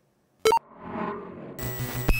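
Electronic logo sting: a short sharp blip about half a second in, a whoosh that swells and fades, then bright ringing synth tones closed by sharp hits.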